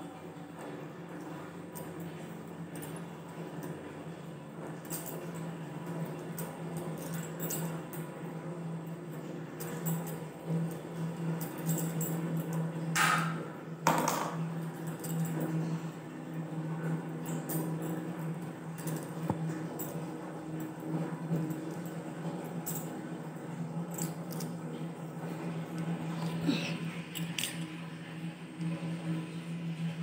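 Hands rubbing oil into hair close to the microphone, a soft rustling with scattered light clinks of glass and metal bangles, the loudest two close together about halfway through. A steady low hum runs underneath.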